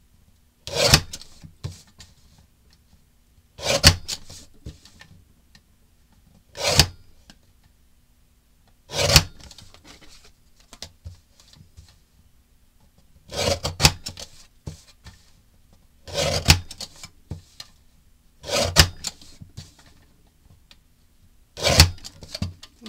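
A sliding-blade paper trimmer cutting thin strips off cardstock and patterned-paper card panels. Its blade makes about eight short, quick cutting strokes, a few seconds apart, with soft rustling of the paper being repositioned between cuts.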